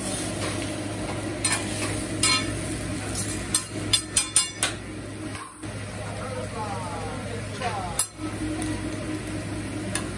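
Food sizzling on a hot steel teppanyaki griddle while a metal spatula scrapes and clacks against the cooking surface, with a quick run of sharp metal clinks about four seconds in.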